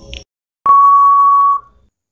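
Countdown-timer sound effect: a last short tick, then a single long electronic beep at one steady pitch lasting nearly a second, signalling that the time is up.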